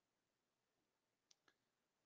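Near silence, with two very faint clicks about a second and a half in.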